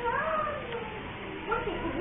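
A high, voice-like call gliding up and down, heard twice: once at the start and again near the end, over a steady low noise.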